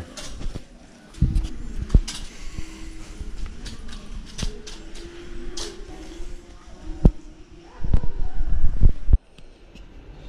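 Irregular knocks and low thumps, with faint voices in the background. A denser run of thumps near the end cuts off suddenly.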